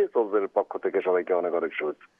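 A person talking over a telephone line, heard as a thin, phone-quality voice with no high end.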